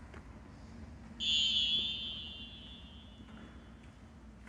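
A referee's whistle blown once about a second in, a short high blast that trails off over a couple of seconds. In volleyball this is the signal for the server to serve.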